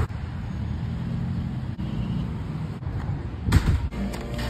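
Road traffic at an intersection: cars passing with a steady low engine and tyre rumble. A short, loud rush of noise comes about three and a half seconds in.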